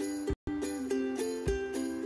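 Background music: a light, tinkly bell-like tune over a low beat about once a second. It cuts out completely for a moment about a third of a second in.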